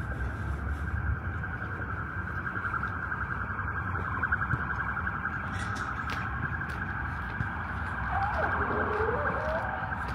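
An electronic siren or alarm sounding steadily, a high tone pulsing rapidly. A lower tone slides down and back up near the end, over a low rumble of traffic.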